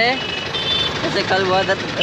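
Talking over the steady running noise of a vehicle, with a short high beep about half a second in.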